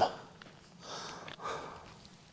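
A man breathing close to a clip-on microphone: two quiet breaths, the first a little under a second in and the second about half a second later.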